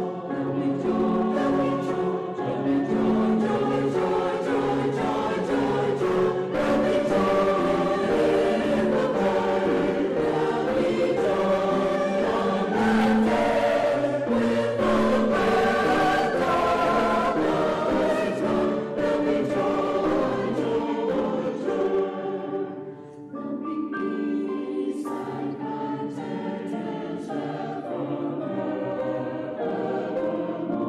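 A choir singing a slow piece of sacred music in long held notes. It drops off briefly about two-thirds of the way through, then carries on a little more softly.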